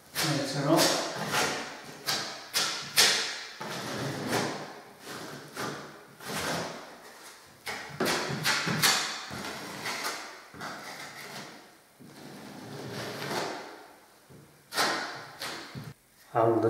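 Filling knife scraping Polyfiller across a plaster ceiling in repeated short strokes, about two or three a second, with brief pauses.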